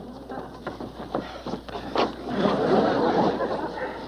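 Scuffling and rustling with several short knocks, and indistinct vocal sounds midway as a man is hauled out.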